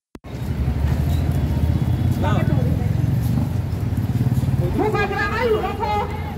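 Busy street sound during a procession on foot: a steady low rumble of road traffic, with people's voices talking about two seconds in and again near the end. The sound drops out briefly at the very start.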